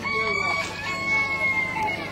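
A rooster crowing: one long call held for nearly two seconds, dropping slightly in pitch at the end.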